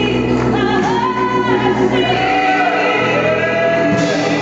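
A woman singing a gospel solo through a microphone, holding long notes and sliding between pitches, with steady accompaniment under her voice.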